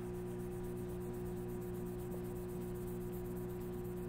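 Steady low hum with a few fixed tones over faint even room noise, a workshop's background drone. No separate rubbing strokes stand out above it.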